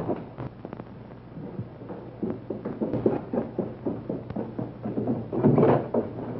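Footsteps on a wooden staircase, a quick run of light knocks at about three to four a second, followed by a louder, fuller sound near the end, over the hiss of an old film soundtrack.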